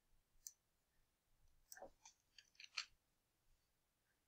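Near silence with a few faint, sharp clicks from a computer mouse being clicked and dragged to highlight text.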